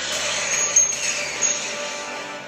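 Film-trailer sound effects: a steady rushing noise over a low hum, with short high-pitched whistling tones about half a second in and again near the end, and one sharp hit in the middle.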